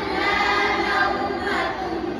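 A group of boys reciting the Quran together in unison, a melodic chant with long held notes.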